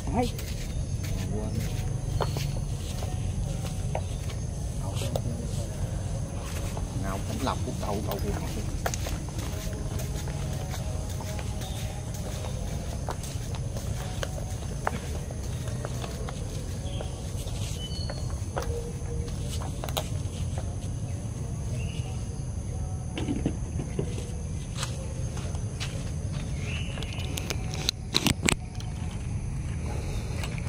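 Faint, indistinct background voices over a steady low rumble, with scattered soft clicks and knocks, a cluster of them near the end.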